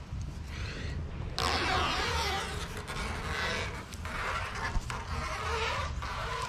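Red backing liner being peeled off the double-sided mounting tape on a carbon fiber spoiler: a tearing hiss, faint at first and loud from about a second and a half in.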